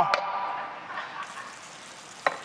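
Chicken wings sizzling quietly in a hot grill pan, a low even hiss with a fainter high hiss coming in about halfway through. A light click near the start.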